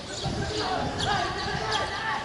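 Distant voices of footballers calling out across the pitch, with a few dull thuds and a bird chirping about once a second.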